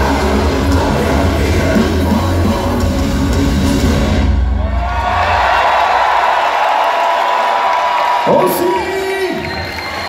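A live symphonic power metal band plays the final bars of a song with heavy drums and bass, and the music stops about four and a half seconds in. A held tone lingers while the crowd cheers and whoops, with a short shouted call near the end.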